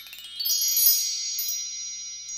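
Chime glissando, like a mark tree: a quick upward run of high bell tones that peaks about half a second in, then rings on and slowly fades.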